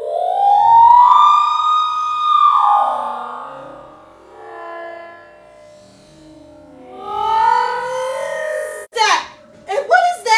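Background music of long, sliding pitched tones that rise, hold and fall away, twice. Short bursts of voice come near the end.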